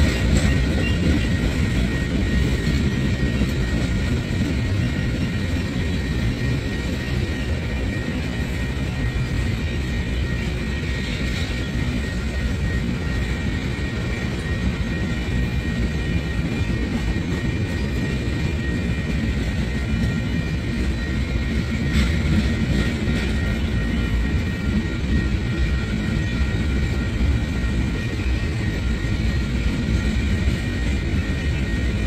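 Freight train of loaded flatcars rolling past at a steady pace: a continuous low rumble of wheels on the rails, with a faint steady high whine above it and a single sharper click about two-thirds of the way through.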